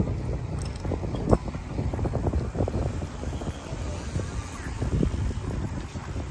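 Wind rumbling on the microphone of a camera moving with a group of cyclists, with many small irregular knocks and rattles from riding over the road surface.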